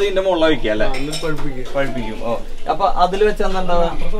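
People talking, with a few faint clinks.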